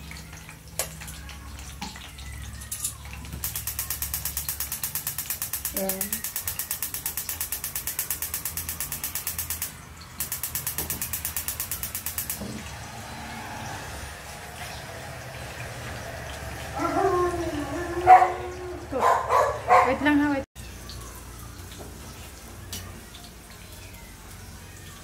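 Rapid, even clicking of a gas hob's spark igniter for about nine seconds, with a short break partway through. About seventeen seconds in comes a brief voice-like sound of a few syllables.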